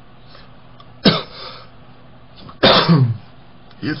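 A man clearing his throat twice, once about a second in and again, louder and longer, near the three-second mark.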